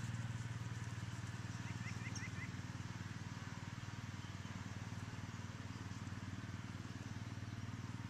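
Steady low drone of a small engine running in the distance, with a few quick high chirps about two seconds in.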